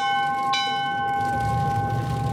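Brass ship's bell struck by its lanyard: it is already ringing from a strike just before, is struck again about half a second in, and rings on in steady overlapping tones. This is the traditional bell strike that marks a ship's departure.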